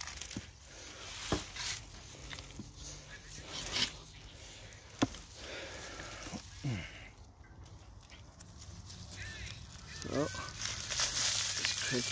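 Digging around a ginger plant with a garden tool: soil and dry leaves rustling, with several sharp knocks and clicks in the first half. A brief voice sounds near the end.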